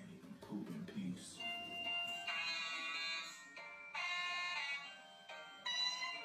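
A musical toilet-paper-roll gadget playing a thin, electronic beeping tune, set off by the roll being pulled. The tune starts about a second and a half in and plays in short phrases that stop and start again.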